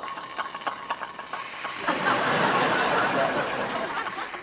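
A dental instrument hissing in an open mouth, with light clicks at first, then louder and rougher about two seconds in.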